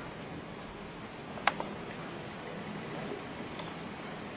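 Crickets chirring steadily and high-pitched over a faint background hiss, with a single sharp tap about one and a half seconds in.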